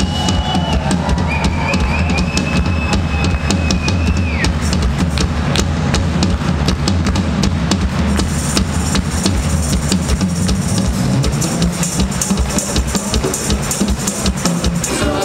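Live band with drum kit and bass driving a steady beat. A long high held note bends down and stops about four seconds in. After that the drums and cymbals carry the groove.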